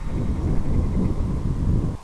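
Wind buffeting the microphone of a fast-flying FPV model plane, a low rumble that drops off sharply at the very end.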